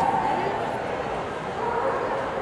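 A dog whining in a high, drawn-out tone near the start and again near the end, over a steady murmur of voices.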